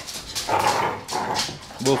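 Dogs play-fighting, with rough scuffling noises through the middle, then a short bark near the end.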